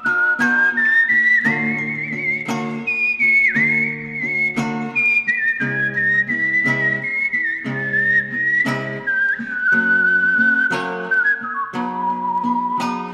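A whistled melody, wavering slightly in pitch, over a steadily picked acoustic guitar with a regular beat of bass notes: an instrumental break in the song.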